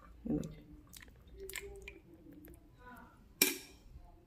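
A metal spoon at an aluminium pot of water: a few faint clicks, then one sharp knock about three and a half seconds in, as a spoonful of ghee is shaken off into the water.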